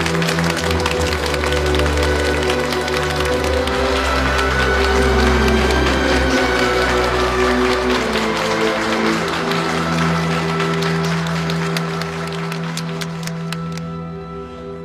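A crowd applauding with many hands over background music with long held notes. The clapping thins out and stops near the end while the music carries on.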